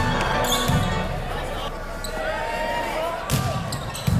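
Live sound of an indoor volleyball rally: sharp smacks of the ball being struck, at the start, about half a second in and again near the end, with sneakers squeaking on the hardwood gym floor and players' and spectators' voices.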